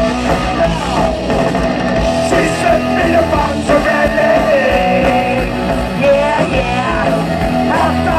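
Punk rock band playing live: electric guitar, bass and drums, with a singer's voice over them.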